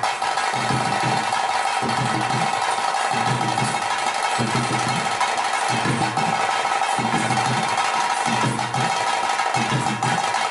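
Traditional ritual accompaniment of a bhuta kola: drums beating a steady rhythm, about two strokes a second, under a held high wind-instrument drone.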